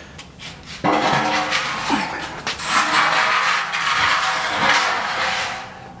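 Welded steel aquarium stand frame dragged across a concrete floor: a long, loud metal-on-concrete scrape with a metallic ring. It starts suddenly about a second in and fades out near the end.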